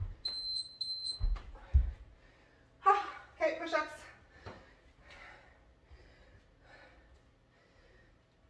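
Electronic interval timer beeping three quick high beeps, the last a little longer, followed by two dull thumps on the floor mat.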